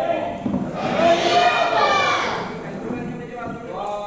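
A group of men's voices chanting devotional calls, with one loud drawn-out phrase rising and falling in the first half and another starting near the end.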